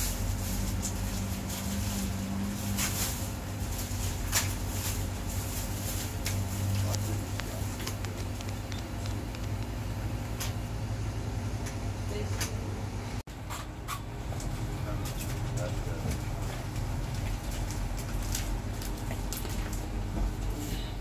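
Busy shop room tone: a steady low hum under indistinct talk, with scattered rustles and small clicks of plastic bags and goods being handled at the counter. The sound drops out for an instant about 13 seconds in.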